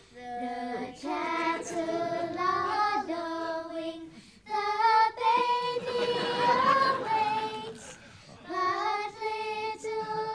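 A group of children singing a Christmas carol together in long held notes, with short pauses between phrases about a second in, around four seconds and around eight seconds.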